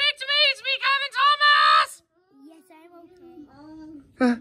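A young child's high-pitched voice wailing a quick run of short rising-and-falling 'ah' cries, about four or five a second. The cries stop about two seconds in, and a quieter, lower voice follows to the end.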